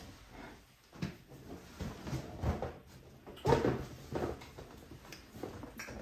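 Household handling sounds as a cardboard appliance box is fetched and lifted: a string of knocks, scrapes and rustles, the loudest about three and a half seconds in.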